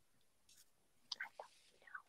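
Near silence, broken by a few faint, brief whispers, the clearest about a second in and just before the end.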